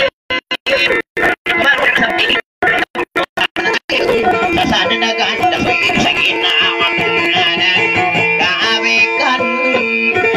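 Dayunday music led by a plucked string instrument, playing a repeating melody of steady notes. For the first four seconds the sound keeps cutting out in short, repeated gaps; after that it plays without a break.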